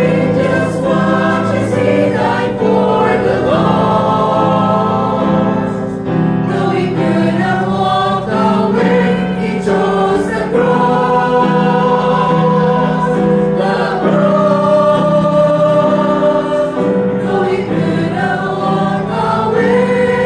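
Mixed church choir of men and women singing a hymn together in sustained, slow-moving notes.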